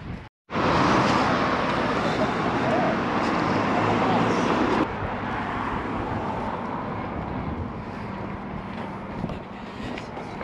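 Road traffic noise: a loud, steady rush that cuts off abruptly about five seconds in, followed by quieter, steady traffic noise.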